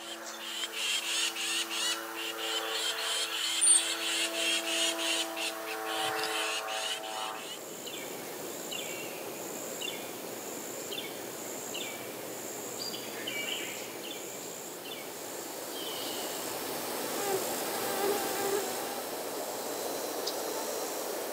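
Insects calling in the woods. For about the first seven seconds a loud, rapidly pulsing rasping call, then a high, steady pulsing insect call with a series of short chirps repeating about once a second.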